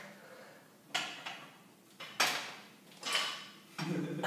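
A barbell loaded with bumper plates being deadlifted from the floor to lockout: three short, sharp sounds about a second apart, each fading away over about half a second.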